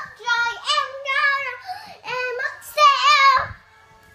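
A young girl singing in a high sing-song voice, a few short held phrases, the loudest about three seconds in. A low bump follows just before it stops.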